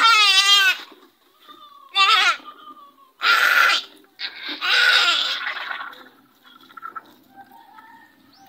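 A young goat bleating in distress as its throat is cut for slaughter: four loud calls in the first six seconds. The first two quaver in pitch, and the last two are rougher and hoarser, the last one drawn out.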